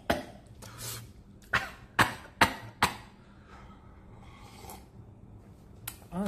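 A man coughing in a fit of short, sharp coughs, the four loudest coming quickly one after another in the middle, then a few fainter ones. The coughing is set off by the heat of the spicy ramen.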